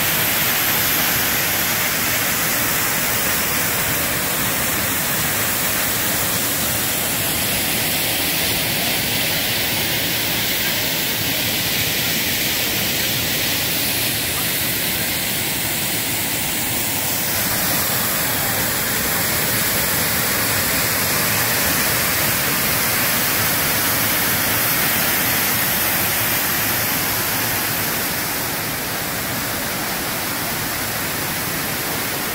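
Steady rush of a tall waterfall plunging down a rock gorge, an even wash of falling-water noise whose tone shifts slightly just past halfway.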